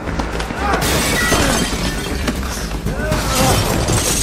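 Movie fight-scene sound: men grunting and shouting as they struggle. About a second in, a loud crash of something breaking and shattering sets in and carries on.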